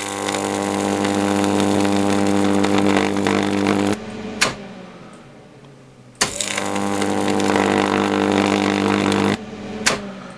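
High-voltage arc from a big 8 kV, 375 mA neon sign transformer running at full power, buzzing and crackling over a strong mains hum. It burns twice, each time for about three to four seconds, with a gap of about two seconds between, and sharp snaps come as the arcs strike and break.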